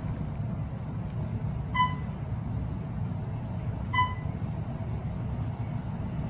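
Otis Gen2 traction elevator car travelling upward, with a steady low ride hum. A short electronic floor-passing beep sounds twice, about two seconds apart, as the car passes floors.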